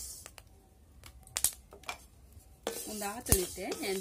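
A spatula scraping and clicking against a steel kadai as dry grains are stirred and roasted, in a few separate strokes. A voice starts speaking near the end.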